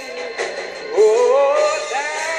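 A man singing gospel, a long wavering note that slides upward and swells about a second in.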